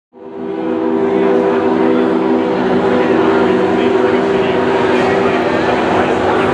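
A sustained electronic drone of several held low tones played through a PA, over a crowd chattering; it fades in over the first half second or so.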